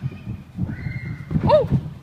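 Quick running footsteps thudding on a padded gym floor during a run-up, with a short yell that rises and falls in pitch about one and a half seconds in.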